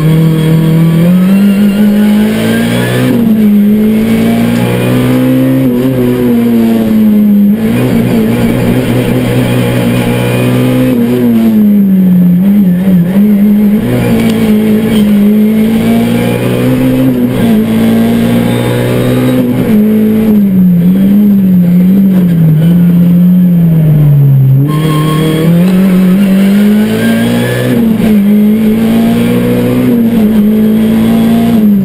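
Race car engine heard from inside the cockpit, driven hard: the revs climb and fall again and again through gear changes, with several brief lifts off the throttle for corners.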